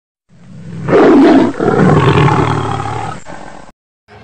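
Big-cat roar, like a lion or tiger: a loud roar swelling to its peak about a second in, then after a brief break a second long roar that fades and cuts off abruptly near the end.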